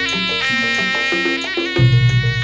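A reed shawm playing a sustained, nasal, buzzy melody with sliding held notes, over barrel hand drums keeping a rhythm. The drums drop out briefly, then come back with loud low drum strokes near the end.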